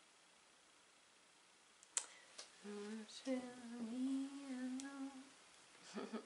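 A woman humming a few held notes for about three seconds, after a sharp click about two seconds in.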